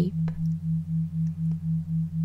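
Brainwave-entrainment tone bed: a low pure tone pulsing evenly about four times a second over a steady lower hum.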